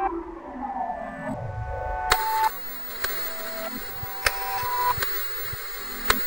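Eerie horror-score synth notes with a falling sweep, then, about two seconds in, a sudden hiss of television static begins and carries on with scattered clicks while held notes sound over it.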